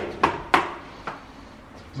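Three short, sharp clicks or taps in a quiet room, the loudest about half a second in.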